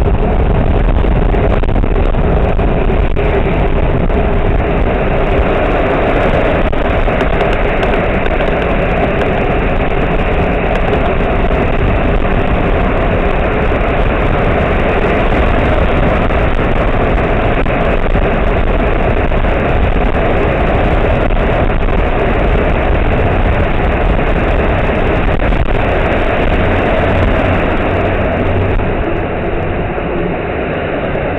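Steady, loud rush of riding noise from a bicycle in city traffic: passing cars and road noise, including inside a road tunnel, mixed with wind on the handlebar camera's microphone.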